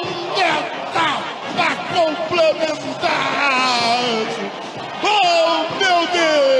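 Excited, drawn-out shouting of a football broadcaster celebrating a goal, over a cheering stadium crowd.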